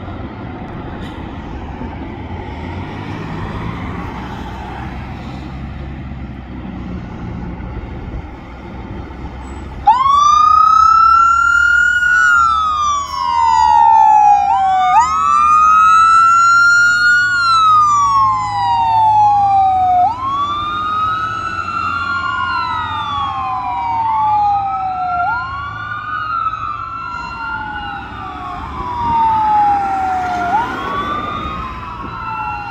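Fire engine's motor rumbling low for about ten seconds. Then its siren comes on suddenly and wails in repeating cycles, each rising quickly and sliding down over a few seconds, about every five seconds. The siren grows a little fainter as the truck pulls away.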